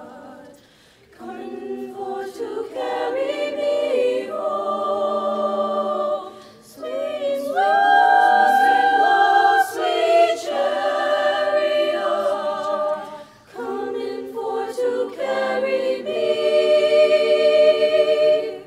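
Women's choir singing a cappella, in phrases broken by short pauses, with a long held chord in the middle.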